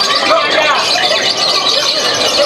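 Lovebirds chattering and squealing in many overlapping high, shrill calls, over a crowd of people shouting and talking at once, loud and unbroken.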